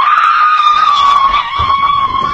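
A long, very loud, high-pitched scream that starts suddenly and holds nearly one pitch, sagging slightly lower as it goes.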